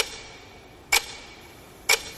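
Three sharp clock-like ticks, evenly about a second apart, over faint hiss, leading straight into the opening of a K-pop song.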